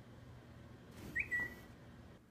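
A phone's text-message alert: one short electronic tone, a little higher at its start and then settling lower.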